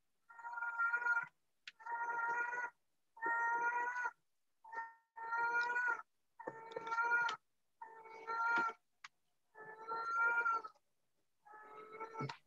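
An animal calling over and over, about eight pitched cries in a row, each roughly a second long, at an even pace.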